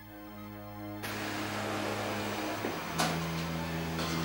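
Background music of sustained keyboard chords, changing chord about two and a half seconds in. Under it is a hiss of background noise from about a second in, with one brief knock about three seconds in.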